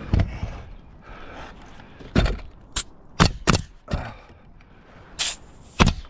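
Pneumatic coil roofing nailer firing a series of sharp shots at uneven intervals, driving nails through metal drip edge at the roof eave.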